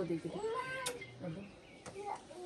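A toddler's short whining call, rising and then falling in pitch, in the first second, with fainter vocal sounds after it.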